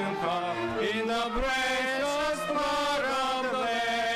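Congregational hymn singing, a man's voice leading through the microphone with long held notes.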